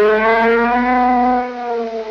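A single long brass-like note held at the end of a piece of music, bending slightly in pitch and fading away near the end.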